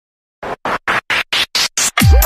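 A DJ-remix intro effect: seven short noise pulses, about four a second, each higher-pitched than the last, forming a chopped rising sweep that starts about half a second in.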